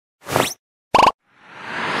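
Cartoon-style intro sound effects: a short bloop rising in pitch, a second quick pop about a second in, then a whoosh that swells up near the end.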